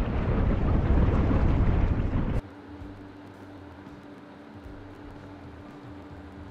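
Machinery noise in a ship's hydraulic ram steering gear room: a loud low rumble that cuts off abruptly about two and a half seconds in, leaving a quieter steady hum with a faint constant tone.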